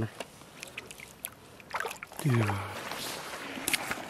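Shallow lake water lapping and sloshing at the shoreline, with faint clicks. One short voice exclamation with a falling pitch a little after two seconds in.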